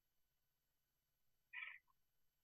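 Near silence, broken about one and a half seconds in by a single brief, faint high-pitched sound.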